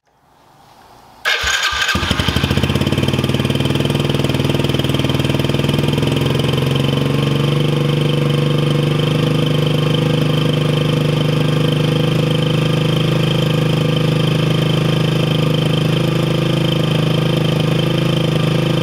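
Yamaha TTR110's 110cc single-cylinder four-stroke engine starting about a second in, catching within a second and then idling steadily, its carburetor freshly cleaned and back in service.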